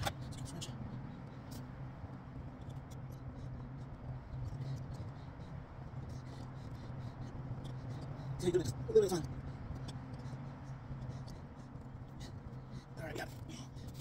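Faint, irregular small clicks of a wrench working a screw extractor set in a broken lug bolt in a wheel hub, over a steady low hum.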